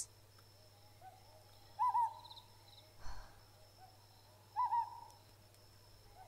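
Owl hooting in a forest ambience: two clear calls about three seconds apart, each a short rising double note, with fainter calls in between. A brief soft rush of noise comes near the middle, over a low steady hum.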